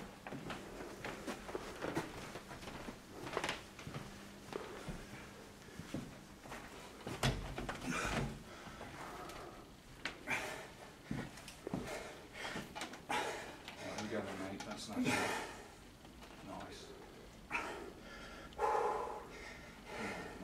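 Indistinct voices with scattered knocks and clanks from plate-loaded gym machines as a lifter moves onto the next machine and settles into it.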